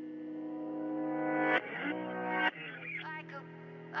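Background music: a song opens on held, swelling chords that change twice, and a sung voice comes in near the end.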